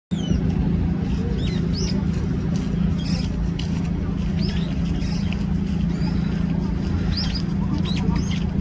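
Brown-eared bulbul giving a scattered series of short, high squeaky calls, each a quick rising or falling sweep, made with its beak shut. Under them runs a steady low mechanical hum, louder than the calls.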